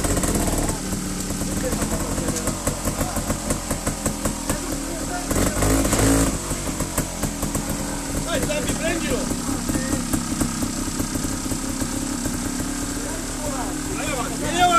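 Trials motorcycle engine idling with a fast, even firing beat, with a brief louder rush about five seconds in.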